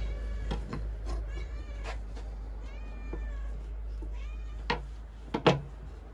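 A cat meowing several times in short, bending calls. Near the end come two sharp knocks of a kitchen knife on a wooden cutting board.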